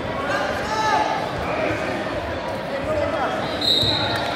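Spectators' voices echoing in a large gymnasium, over repeated dull thuds. A brief high-pitched squeak or whistle sounds near the end.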